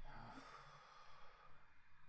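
A faint breath or sigh that fades over about a second and a half, then near silence.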